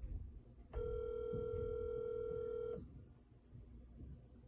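Phone ringback tone from a smartphone's speaker: one steady, even ring lasting about two seconds as an outgoing call rings through.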